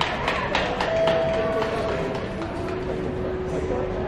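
A few scattered handclaps from onlookers that die out about a second in, followed by laughter and murmuring voices.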